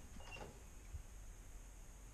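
A hallway cupboard door being swung open: a faint short squeak near the start, then a soft knock about a second in, against quiet room tone.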